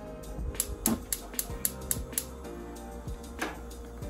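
Gas range burner's spark igniter clicking rapidly, about four clicks a second for about two seconds, as the knob is turned to light the burner. One more click comes near the end, over background music.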